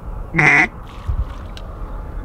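One loud, short duck quack about half a second in, with a faint low thud or two after it.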